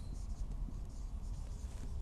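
Marker pen writing on a whiteboard: faint scratching strokes, over a low steady hum.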